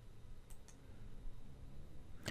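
Quiet room tone with a low hum and two faint clicks about half a second in, made when the lecture slide is clicked forward.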